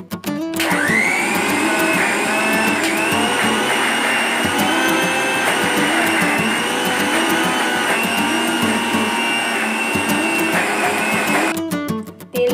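Electric mixer-grinder motor spinning up with a rising whine about half a second in, then running steadily while grinding soaked chana dal into a paste, and stopping just before the end.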